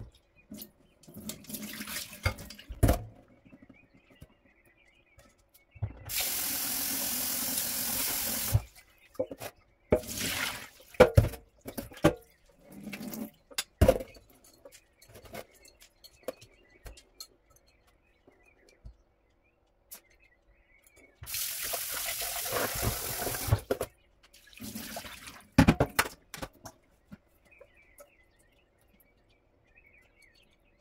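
Kitchen tap running into a stainless steel sink twice, each for about two and a half seconds, once about six seconds in and again about twenty-one seconds in. Between these, water splashes and sharp clinks come from a metal mesh strainer and glass bowl as dry ukwa (African breadfruit) seeds are rinsed and drained.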